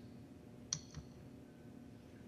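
A single faint click about three-quarters of a second in, then a softer tap, over quiet room tone: the computer click that advances the presentation slide.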